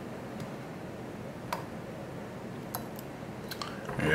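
Quiet room tone with a few faint, sharp ticks as fingers handle hackle pliers and a biot while wrapping a fly body at a fly-tying vise.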